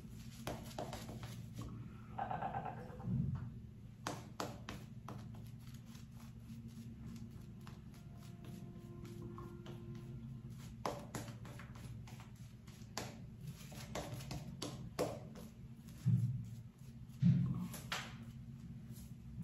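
Synthetic-bristle shaving brush working lather over a bearded face: quiet wet swishing with many small clicks from the bristles and foam, and a couple of soft low thumps near the end.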